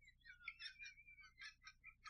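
Very faint, high-pitched wheezing of a man's nearly silent laughter: a run of short squeaks, about five a second, with one brief wavering whistle about half a second in.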